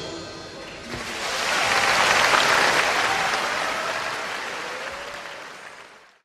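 Audience applause starting about a second in, swelling and then slowly dying away.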